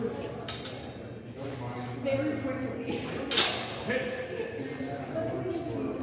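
Steel longsword blades clashing in sparring: a metallic clink about half a second in, then a louder, ringing clash a little over three seconds in.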